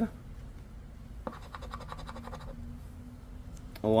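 Scratch-off lottery ticket being scratched: a quick run of rapid scraping strokes, starting with a tick about a second in and lasting about a second and a half, as a play spot's coating is rubbed off.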